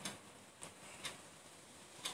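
Faint ticking: a few short clicks about half a second apart over a quiet background.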